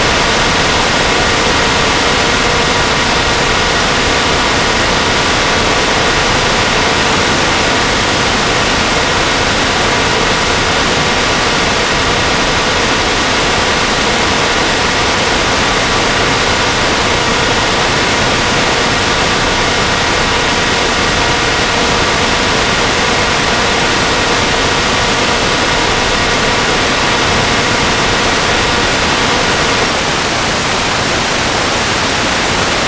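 Steady loud hiss of static with a few faint steady tones under it, unchanging throughout, with no speech or other events.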